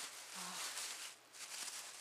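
Thin plastic shopping bag rustling and crinkling as a stack of paperboard children's books is pulled out of it, with a brief lull a little past halfway.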